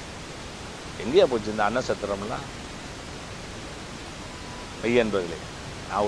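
A man's voice speaking two short phrases with long pauses between them, over a steady, even hiss.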